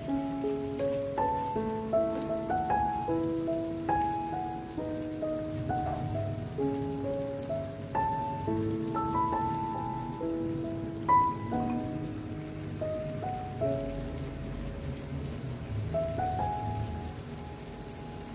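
Gentle piano melody, with a steady sizzle of zucchini and onion frying in a pan underneath.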